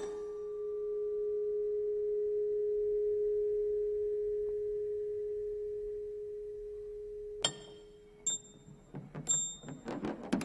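Metal car parts in a chain-reaction setup: one long steady ringing tone that swells and then fades over about seven seconds, followed near the end by a few light metallic clinks and taps.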